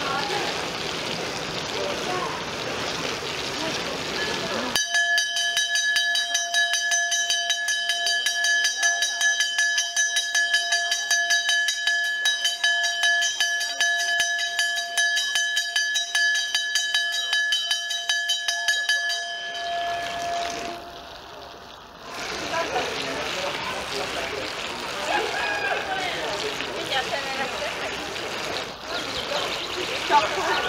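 A large hanging signal bell rung by a pull-rope, struck over and over in quick succession for about fifteen seconds, starting about five seconds in. This is the warning that the wave pool's waves are starting. Before and after it there is the chatter of a crowded swimming pool.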